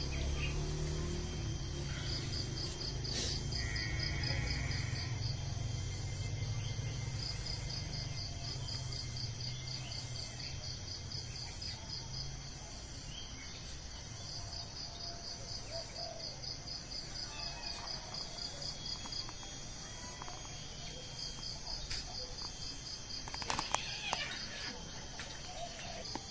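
Insects chirping outdoors in repeated runs of quick, evenly spaced high pulses, each run lasting a few seconds, over a steady high insect whine. A low hum fills the first half, and a couple of sharp clicks sound near the end.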